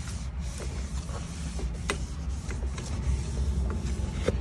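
Dust being wiped off a metal surface inside a skid-steer cab: scratchy rubbing with scattered small clicks and knocks, one sharper click about two seconds in, over a steady low rumble.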